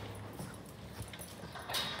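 Labrador retrievers moving about in a concrete-floored kennel: a few faint, scattered taps over low background noise.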